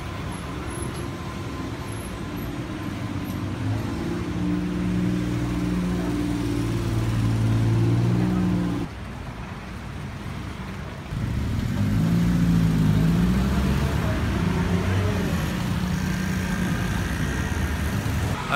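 Street traffic with a bus's engine running, its low hum growing louder over the first several seconds. The sound drops suddenly about nine seconds in, and engine and traffic noise resumes about two seconds later.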